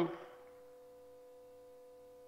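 A pause in a man's amplified speech: his last word trails off with a short echo just after the start, then only a faint steady hum with a few steady tones, typical of a public-address system left open.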